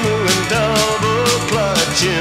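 Instrumental break in a 1970s country truck-driving song: a lead melody line bending and wavering in pitch over steady bass and a regular drum beat.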